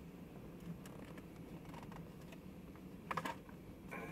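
Freight train of boxcars rolling past, heard muffled from inside a car: a low steady hum with scattered faint clicks and a short cluster of sharper clacks about three seconds in.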